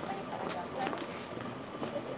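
Indistinct background chatter of several people talking, with a few light clicks.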